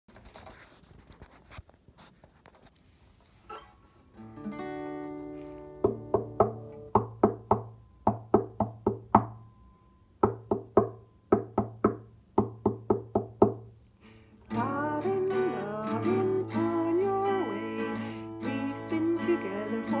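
Acoustic guitar strummed in a steady rhythm, about three strums a second, with a short break partway through. After a few faint handling knocks at the start, a woman begins singing along with the guitar about two-thirds of the way in.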